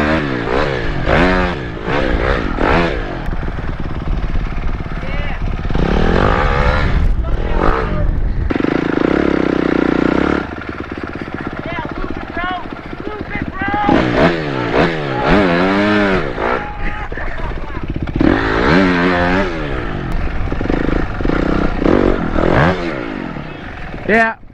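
Honda dirt bike engine revving up and down repeatedly as it is ridden over the track, the pitch climbing under throttle and dropping back, with a steadier held stretch near the middle.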